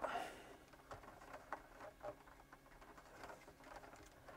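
Faint scattered clicks and rustles of an electrician's fingers handling wiring, working a neutral conductor into a tight terminal in a consumer unit.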